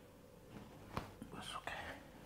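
A single sharp click about a second in while the wrist and forearm are being worked by hand, followed by a short stretch of breathy whispering.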